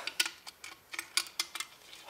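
Clock ticking: a run of sharp, quick ticks, about three or four a second and somewhat unevenly spaced.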